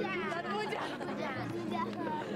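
Film score with long held low notes under crowd chatter and emotional, laughing voices.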